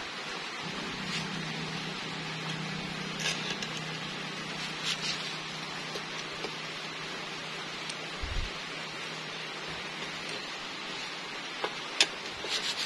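Steady hiss with a low hum through most of it, and a few faint clicks and one dull knock of a long screwdriver working against the metal inside an opened scooter crankcase.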